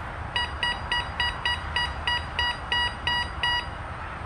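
Bounty Hunter Mach 1 metal detector giving its target tone as a silver quarter is passed over the coil from about eight inches away: a quick run of about a dozen identical short beeps, about four a second.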